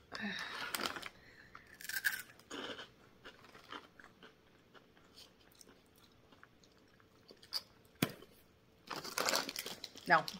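A person biting and chewing crunchy spicy prawn crackers: louder crunches in the first three seconds, then quiet chewing, with a sharp crunch and another burst of crunching near the end.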